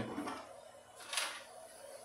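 Plastic body shell of an Arrma Infraction RC car being pulled off its chassis by hand: a faint, brief plastic rustle about a second in.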